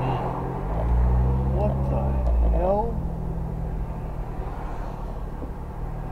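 Vehicle's engine and road noise heard from inside the cab while driving. The engine note swells for a couple of seconds about a second in, then settles back to a steady run.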